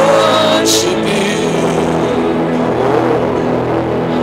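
Church keyboard playing long held chords under prayer, with a cymbal swell about a second in and a voice rising and falling over the music.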